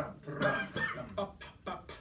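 A man coughing and clearing his throat in a few short bursts.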